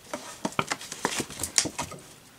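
A clear plastic gift box being handled and opened: a run of irregular clicks, taps and crinkles as the lid and wrapping are pulled off.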